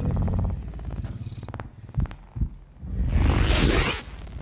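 Science-fiction film sound effects: a low, pulsing electronic hum, a couple of soft knocks around the middle, then a rising hiss with a thin high tone near the end as a blade slides slowly through a personal energy shield.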